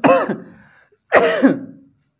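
A man coughing twice: a harsh voiced cough right at the start and another about a second later.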